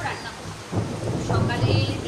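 Heavy rain with thunder: a steady low rumble that dips briefly about half a second in and then comes back.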